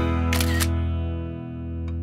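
Acoustic guitar background music ending on a held chord that rings and fades out, with a camera-shutter sound effect about half a second in.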